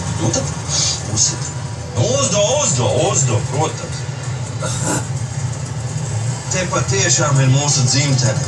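Soundtrack of a projected bus-ride film played over loudspeakers: voices and music over a steady low vehicle engine hum, with one sharp knock about five seconds in.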